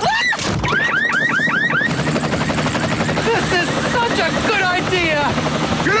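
Helicopter rotor beating steadily, with a quick run of five up-and-down whistles in the first two seconds and a flurry of gliding chirps in the second half.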